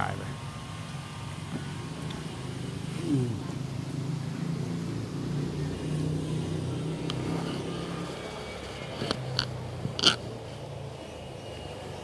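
A steady low engine hum runs throughout, with a few short, sharp clicks about nine to ten seconds in.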